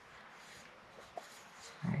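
Faint handling sounds of a paper oil filter element being pressed into its plastic cap housing, with a small click about a second in.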